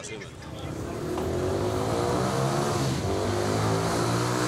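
A large vehicle engine running at raised revs: its hum swells over about the first second, then holds loud and steady, creeping slightly higher in pitch.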